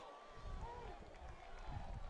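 Faint football-ground crowd noise with a few distant shouts from the stands, reacting to a goalmouth chance.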